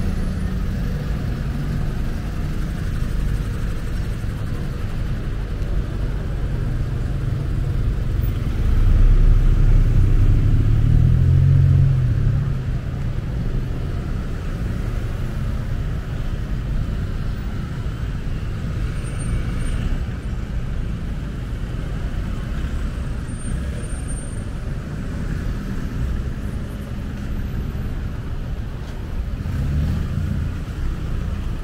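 Steady road traffic passing close by: cars, vans and buses running past, with one vehicle's low engine sound swelling louder for about three seconds around nine seconds in.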